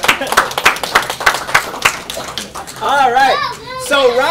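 A small audience clapping by hand for about two seconds, in quick, uneven claps, with voices talking over it near the end.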